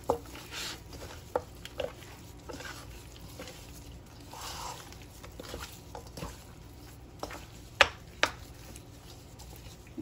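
Gloved hands rubbing dry seasoning into beef ribs in a stainless steel bowl: soft squishing and rustling, with scattered clicks and knocks as the ribs bump the bowl, two sharper ones about eight seconds in.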